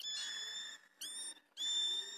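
A bird calling: three high whistled notes, each rising quickly into a held tone, the first the longest.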